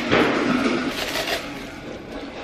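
Brown honeycomb kraft packing paper rustling and crinkling as a drinking glass is unwrapped from it, loudest just at the start and again about a second in.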